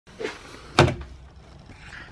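A hand knocking a bedside digital alarm clock's button to switch off the alarm: a soft bump, then a sharp plastic knock a little under a second in.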